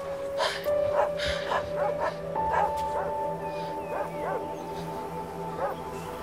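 Dramatic background music with long held notes. Over it come short calls that rise and fall in pitch, about two a second.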